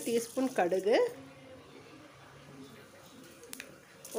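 A woman speaking for about a second, then a quiet stretch of faint hiss with one light click near the end.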